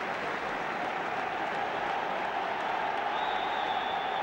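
Large football stadium crowd applauding and cheering steadily, welcoming a substitute onto the pitch.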